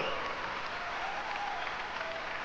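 Large audience applauding steadily, a dense even patter of many hands clapping.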